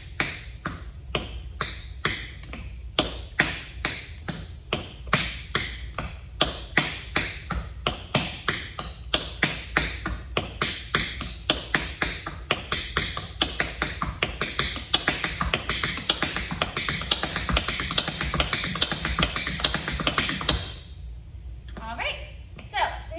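Tap shoes striking a wooden floor in repeated paradiddle steps: a stream of sharp taps that speeds up steadily, a few a second at first and densely packed later, then stops shortly before the end.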